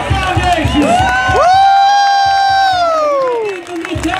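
Crowd of spectators cheering with children shouting, and one long high 'whoo' shout that rises, holds for about two seconds, then falls away.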